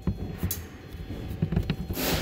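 Handling noise: a few soft knocks and rustles as a hand takes hold of a car's plastic rear-view mirror, over a low steady background rumble.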